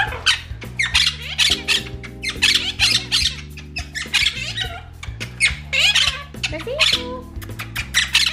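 Monk parakeets (Quaker parrots) in a cage squawking in a rapid run of short, harsh calls, several a second, over background music.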